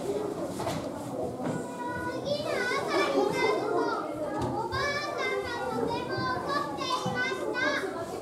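Young children's high-pitched voices calling out, several at once, strongest from about two seconds in, over a low murmur of other children.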